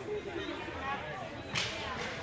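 A single sharp crack of hockey sticks at a faceoff about one and a half seconds in, over the voices of the rink crowd.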